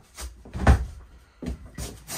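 Three or four dull knocks on the wooden cabinetry under an RV bed. The loudest comes just under a second in, and quieter ones follow near the middle and near the end.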